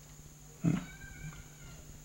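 A man's short murmured 'hmm' just after half a second in, then quiet room tone with a steady low hum and a few faint, thin, steady high tones.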